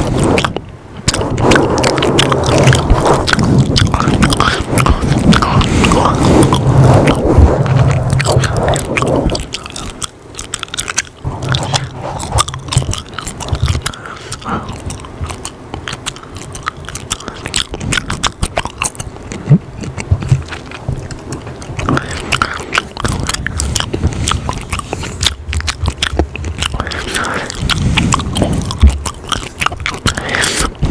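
Close-up gum chewing and mouth sounds right at a foam-covered microphone. For about the first nine seconds the sound is louder and denser, with hands cupped around the mic. After that it turns to quieter, scattered wet clicks and smacks.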